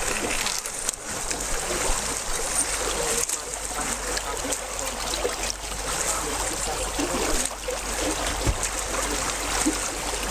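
Icy lake water sloshing and churning as people push through slush and broken ice, with many small knocks and clicks of ice pieces.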